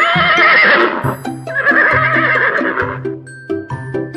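A horse whinnying twice: a long quavering call lasting about a second, then after a short pause a second call of about a second and a half. Both are heard over background music with a steady beat.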